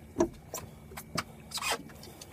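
Irregular knocks, clicks and scuffs as a large leerfish is hauled up off a boat deck and handled, with two louder short bursts, one just after the start and one near the end.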